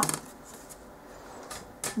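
Craft materials being handled on a tabletop: a quiet pause, then two short crisp clicks near the end.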